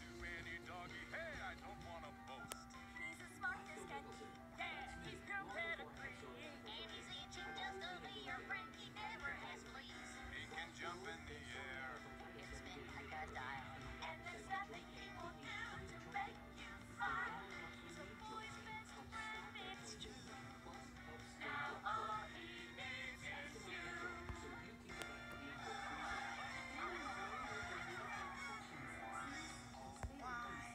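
A song from a children's puppet show: a character sings over instrumental backing, heard off a television's speaker, with a steady low hum underneath.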